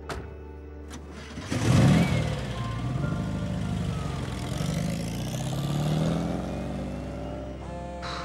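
A car engine starts about a second and a half in and revs, its pitch rising and falling as the car pulls away, over soft background music.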